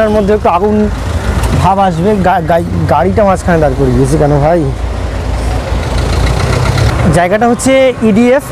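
A man talking over street traffic, with a heavy vehicle's engine rumbling close by; the engine is heard most plainly in a pause of a couple of seconds in the second half.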